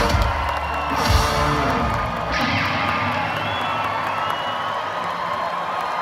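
A reggae band's live song ending, its last bass-heavy notes dying away about one and a half seconds in, then the concert crowd cheering and whistling.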